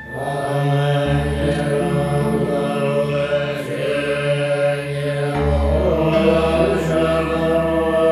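Tibetan lamas chanting a Buddhist prayer over a musical backing with sustained low bass notes; the chanting comes in strongly just after the start.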